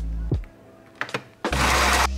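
Bean-to-cup coffee machine making a coffee: a couple of clicks, then a loud burst of whirring noise about a second and a half in. Background music plays at the start, drops away, and returns with the machine's noise.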